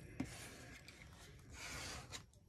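A scraper tool rubbing over a paper cutout to press it flat onto a freshly glued page: a faint, scratchy rubbing, with a small tap just after the start and a slightly louder stretch near the end.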